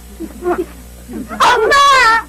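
A young boy crying, with soft sobs and then a loud, high, wavering wail breaking out about one and a half seconds in.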